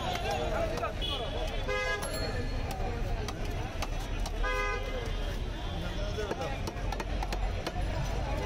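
Two short vehicle horn toots, about two and a half seconds apart, over steady chatter of many voices.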